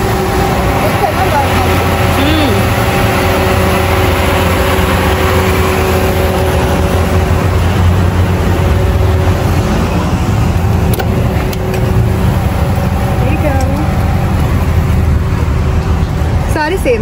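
A GMC pickup truck's engine idling close by: a steady low hum that holds its level throughout.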